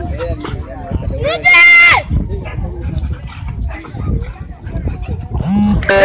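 A boxer and a Labrador fighting on grass: constant scuffling, with one loud, high-pitched cry lasting about half a second, about a second and a half in. A lower voice is heard near the end.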